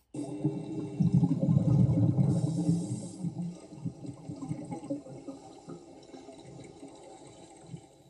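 Water rushing and churning as heard underwater around a swimmer doing the underwater dolphin kick. It starts abruptly, is loudest for the first three seconds or so, then fades steadily.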